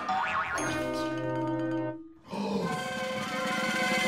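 Cartoon sound effects added in editing: a wobbling, springy boing followed by held musical tones that stop about two seconds in, then a second held musical sting. It is the kind of comic effect laid over a slip and fall.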